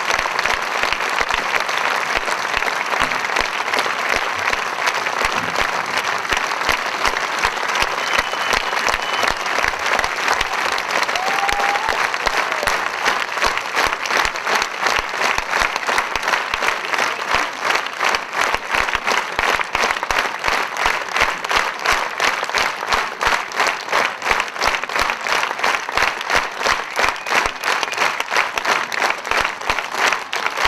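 Audience applause: at first a dense, even wash of clapping, which about halfway through turns into rhythmic clapping in unison with a steady beat.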